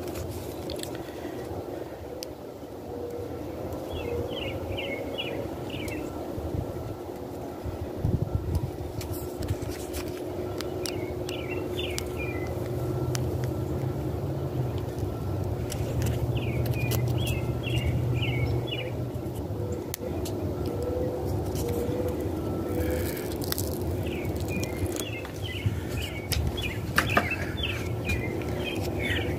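Outdoor ambience: a bird sings short chirping phrases every few seconds over a steady low rumble. Scattered light clicks and rustles come from close by, with a few louder clicks near the end.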